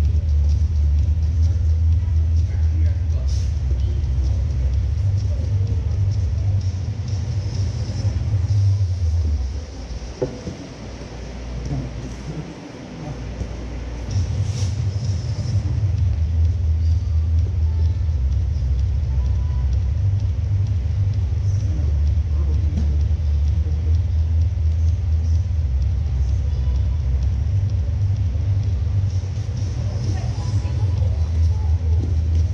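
A steady low rumble that drops away for about five seconds, roughly ten seconds in, then returns, with faint scattered knocks and noises over it.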